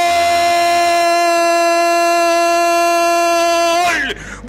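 A radio football commentator's long drawn-out goal cry: one man's voice holding a single loud shouted note at a steady pitch, dropping off just before the end.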